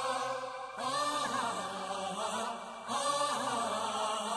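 Background music with a chant-like sung vocal melody, a new phrase starting about every two seconds.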